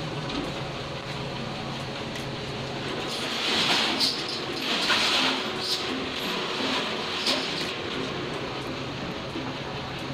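Street traffic: a vehicle engine running steadily nearby, with a louder hissing rush and a few sharp peaks from about three to eight seconds in, like a vehicle passing close by.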